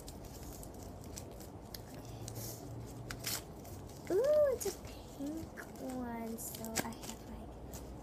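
Paper wrapping crinkling and tearing as it is pulled off by hand, in many small irregular crackles. A child's short rising-and-falling vocal sound about halfway through is the loudest moment, followed by a few brief murmurs.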